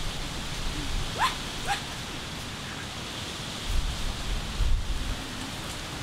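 Two short rising animal calls about half a second apart, over a steady outdoor hiss, with a few low thumps a little past the middle.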